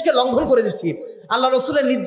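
Only speech: a man lecturing forcefully in Bengali into a microphone, with a brief pause about a second in.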